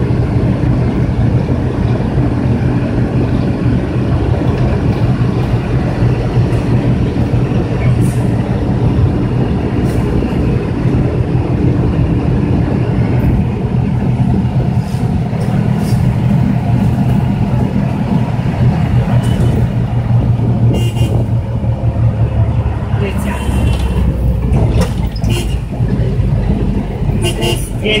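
Trotro minibus heard from inside the passenger cabin while on the move: a steady engine drone with road noise, and scattered clicks and rattles that come more often in the last several seconds.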